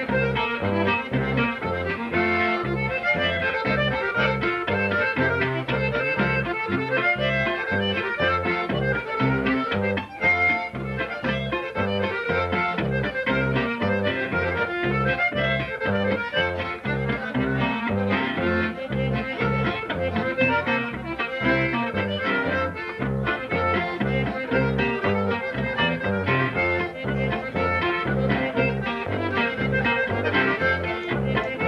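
Conjunto band playing a polka: diatonic button accordion carrying the melody over bajo sexto strumming and electric bass, with a steady bouncing bass beat.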